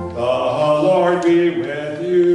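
A pastor's male voice chanting a line of the liturgy, sliding between notes, just as a held organ chord stops.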